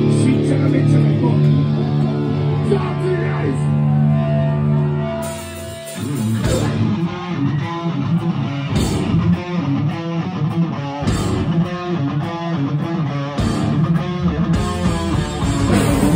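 Live heavy rock band with electric guitars, bass and drums. The guitars and bass hold one ringing chord for about five seconds, then after a brief break the whole band comes in with a driving, rhythmic riff and cymbal crashes.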